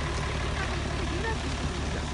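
Heavy police truck's engine idling steadily as a low rumble, with faint voices over it.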